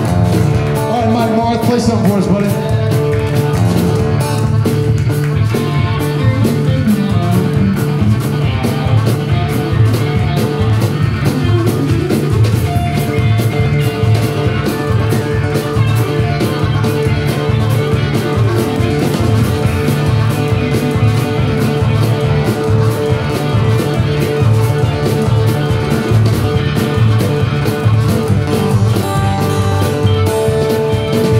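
Live blues 'train song' on harmonica, acoustic guitar and upright bass: the harmonica, played cupped into a microphone, holds a long steady note over an evenly chugging guitar strum and bass.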